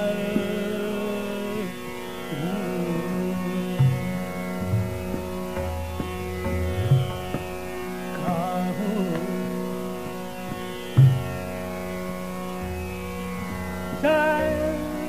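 Hindustani classical vocal music in raga Bageshree: a singer's voice slides through ornamented phrases over a steady tanpura drone. Low tabla strokes join about four seconds in and recur sparsely, some with a pitch bend.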